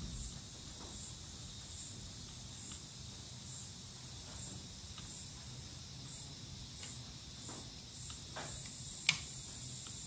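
Faint, high insect chirps repeating about once a second, over small metallic clicks from fitting links onto car battery terminals. One sharp click about nine seconds in is the loudest sound.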